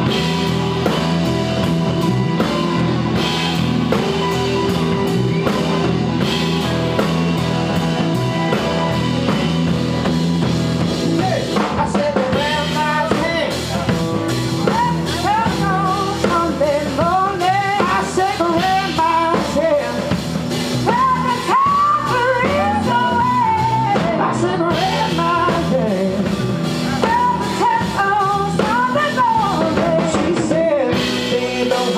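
Live blues-rock band playing with electric guitars and a drum kit. About twelve seconds in, a bending lead melody with singing comes in over the band.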